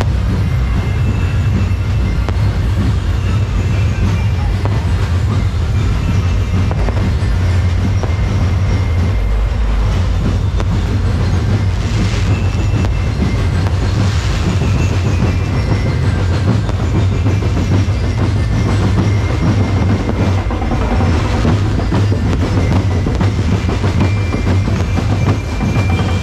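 Aerial fireworks going off continuously, a dense crackling with a few louder bursts, over a steady low rumble.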